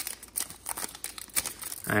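Silver foil wrapper of an Upper Deck hockey card pack crinkling as it is torn open and the cards slid out: a run of irregular crackles.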